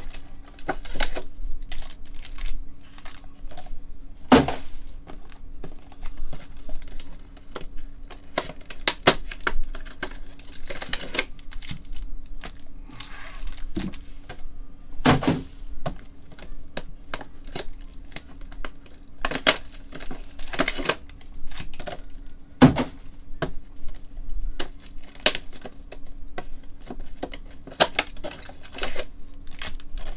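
Foil trading-card pack wrappers crinkling and tearing open as packs and cards are handled on a table: an irregular string of sharp crackles and clicks, a few of them loud.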